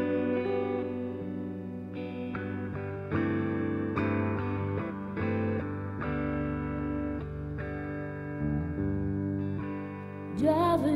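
Guitar music played through effects, with held chords that change about every second.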